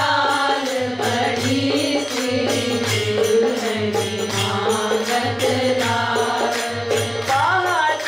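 Devotional kirtan: a voice sings a slow bhajan line over a harmonium, with a steady drum beat about once a second and jingling percussion.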